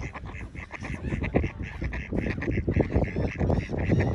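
Mallard ducks quacking in a quick run of short calls.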